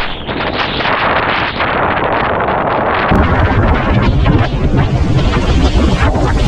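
Strong wind buffeting the microphone of a waterproofed action camera, a loud rough rush of noise, over surf washing against the jetty rocks. About three seconds in, after a sharp click, the wind rumble grows heavier and harsher.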